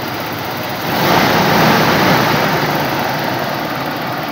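Toyota Revo's gasoline engine running after being started from a DIY lithium-polymer jump starter pack. It grows louder about a second in and holds there.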